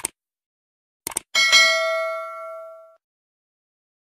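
A short click, then a quick double click, then a bright bell ding about a second and a half in that rings out and fades over about a second and a half.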